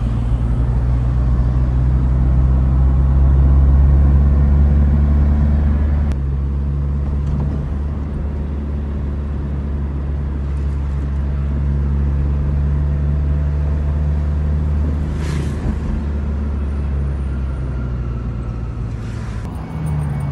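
Car engine and road noise heard from inside a moving car: a steady low rumble whose tone shifts abruptly about six seconds in.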